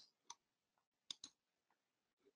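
Near silence with a few faint computer-mouse clicks: one shortly after the start and a close pair about a second in.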